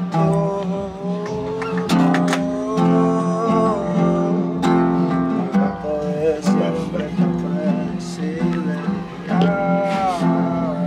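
Acoustic guitar being picked: a melody over chords, with the notes left ringing and a warm tone.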